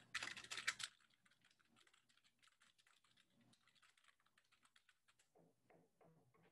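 Typing on a computer keyboard: a quick run of keystrokes in the first second, then faint, scattered keystrokes.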